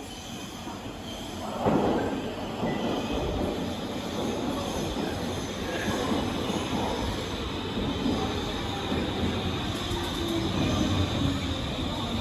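Stockholm metro C30 train arriving at an underground platform. The rumble of wheels on rail jumps louder about two seconds in, with a high wheel squeal. Near the end a whine falls in pitch as the train brakes to a stop.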